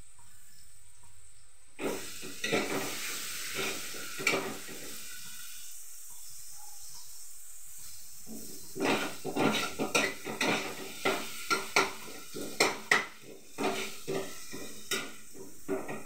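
Food sizzling in a frying pan on a gas stove, the sizzle setting in about two seconds in. A metal spatula scrapes and knocks against the pan in two bouts, a few strokes first and then a quick run of them over the second half.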